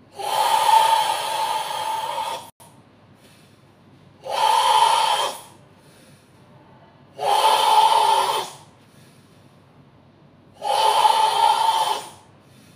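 Four loud, forceful breaths from a karateka doing the tensed breathing of Sanchin kata, each lasting one to two and a half seconds, the first the longest, with quiet pauses of about two seconds between them.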